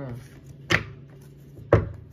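Two sharp knocks on a wooden tabletop about a second apart, the second one louder and deeper, over a low steady hum.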